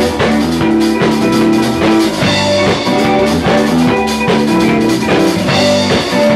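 Live rock band playing: drum kit with cymbals, electric guitars, bass guitar and keyboard together, loud and steady.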